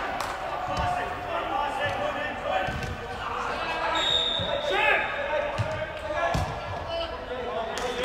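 Players calling and shouting in a large, echoing indoor football hall, with several dull thuds of a football being kicked on artificial turf.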